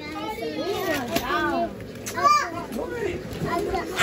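Young children talking and calling out over each other in unclear words, with one louder call a little after halfway.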